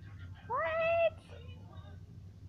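A single meow-like call, rising at first and then held level for about half a second, about half a second in.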